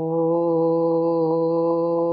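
A voice chanting a Vedic mantra, holding one long note at a steady pitch.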